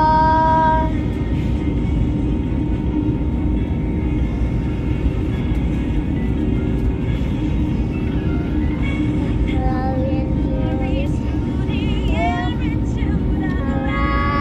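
Steady drone of an airliner cabin, with short sung phrases coming and going over it, near the start, a few times in the second half and again at the end.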